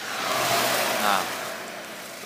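A van passing on the road: a rush of tyre and engine noise that swells and then fades away over about two seconds.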